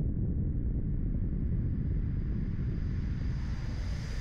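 Sound-design riser for an animated logo intro: a steady low rumble with a thin hiss above it that climbs steadily in pitch, building toward the logo reveal.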